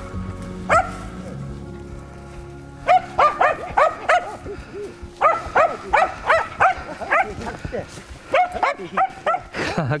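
Finnish spitz barking in high, sharp yaps: one bark just under a second in, then a fast run of about three to four barks a second from about three seconds on. This is the bird dog's barking to mark a capercaillie.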